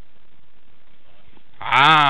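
A man's voice holding one long, drawn-out vowel-like sound for about a second, starting near the end. Its pitch rises slightly and then falls. Before it there is only quiet room tone.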